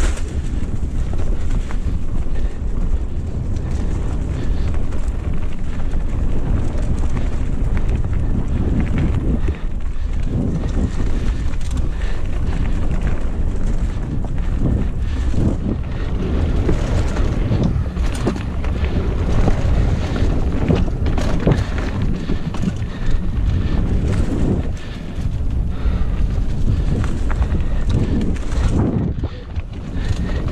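Wind buffeting the camera microphone while riding a Giant Talon mountain bike on dirt singletrack: a loud, steady low rumble throughout, broken by frequent short knocks and rattles from the bike jolting over the rough trail.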